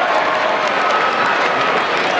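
Basketball arena crowd clapping and cheering, a steady din of many voices.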